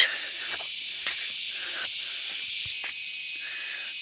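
Steady high-pitched hiss of forest insects, with a few faint soft steps on the dirt.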